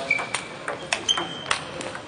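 Table tennis rally: the ball clicks off bats and table several times in quick succession, with short high squeaks of players' shoes on the floor.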